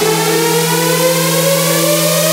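Melodic techno with the drums dropped out: a synth sweep glides slowly upward in pitch over a held low synth chord, with a hiss of noise high above.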